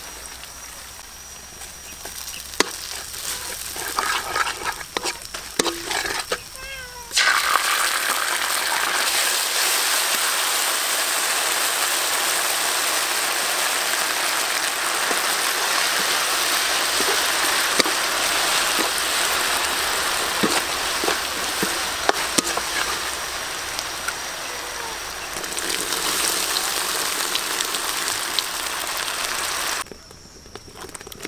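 Minced garlic and dried red chillies frying in oil in a wok, with the spatula scraping and clicking against the pan. About seven seconds in, liquid hits the hot wok and a loud, steady sizzle starts that goes on to the end.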